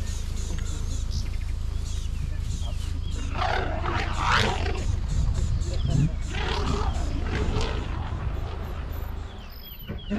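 Young African elephant trumpeting, two rough blasts about three and six seconds in, over a steady low rumble.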